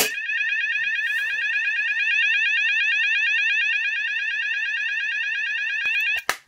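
Banshee Excel fire alarm sounder going off, set off by pressing a manual call point. It gives a loud, fast, repeating rising sweep tone that starts with a click, and there is another click near the end just before it cuts off.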